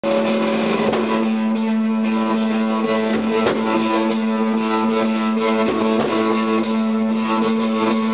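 Live indie rock band playing: guitars strumming over one steady held low note, with a few sharp percussive hits.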